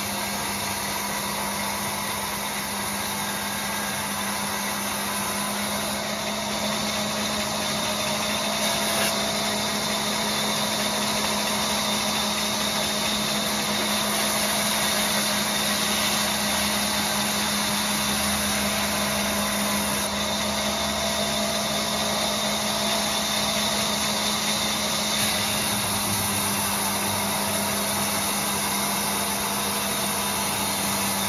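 Sawmill band saw running steadily as it rips a long teak log lengthwise: a continuous machine hum with no breaks, getting a little louder about a quarter of the way in.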